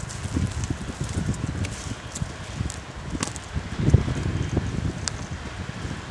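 Wind buffeting an outdoor camera microphone in uneven gusts, strongest about four seconds in, with scattered sharp crackles and clicks over a steady hiss.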